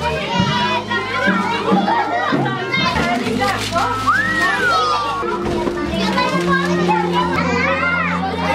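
A roomful of young children chattering and calling out excitedly over background music with steady held bass notes, with wrapping paper tearing as presents are opened.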